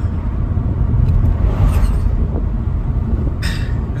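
Road noise inside a moving car's cabin: a steady low rumble of tyres and engine on the road. A louder rush swells and fades about one to two seconds in as an oncoming vehicle passes.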